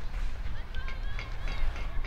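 Wind rumbling on an outdoor microphone, with faint distant voices. Starting about a second in, a quick run of short high chirps repeats a few times a second.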